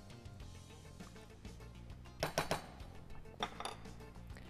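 Quiet background music with a few sharp clinks of a metal spoon against a pot as rice in broth is stirred, the clearest about two seconds in and a few more near the end.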